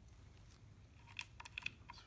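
A few faint metallic clicks, starting about a second in, as a loosened valve-body bolt is turned out and lifted by gloved fingers.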